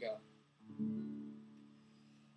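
Acoustic guitar: a single chord strummed about half a second in, left to ring and slowly fade.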